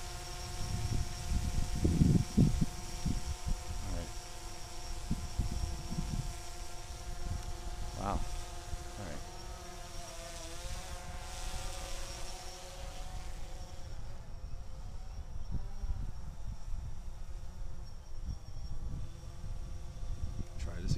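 DJI Phantom 3 Standard quadcopter hovering overhead, its propellers giving a steady buzzing hum of several even tones. The pitch wavers around ten and again around fifteen seconds in as the motors adjust. Wind rumbles on the microphone, heaviest about two seconds in.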